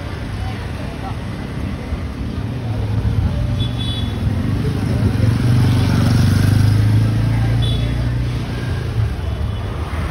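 Street traffic noise, with a low vehicle engine hum that swells to its loudest a little past the middle and then eases off.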